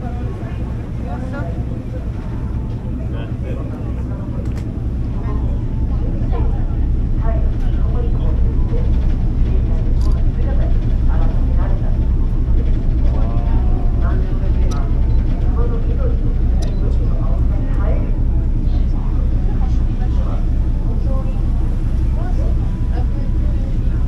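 A passenger ferry's engine running underway with a steady, low pulsing throb, which grows louder about six seconds in. Indistinct voices chatter over it.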